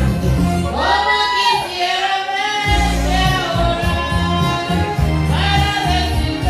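A woman singing into a microphone over a karaoke backing track with a heavy bass line. Her sung phrases with held notes come in about a second in and again near the end. The bass drops out briefly in between.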